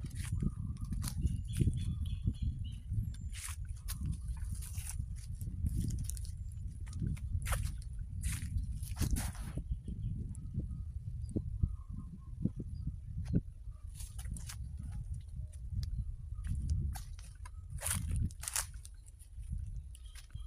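Wind buffeting a phone's microphone, a steady low rumble, with irregular crunches and rustles of footsteps through grass and undergrowth as the person walks.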